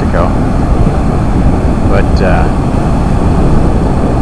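Excess storm water from the deep tunnel pouring out through a row of open outlet gates into the river channel, a loud, steady rush of churning water. It is a big release of floodwater stored underground after heavy rain.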